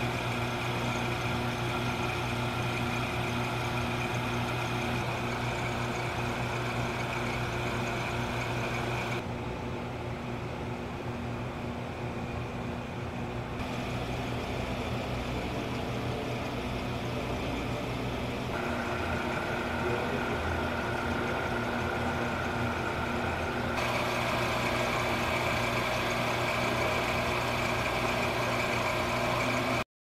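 Steady mechanical hum of running glove box equipment: a constant low tone with overtones under a hiss, the hiss shifting abruptly in level a few times.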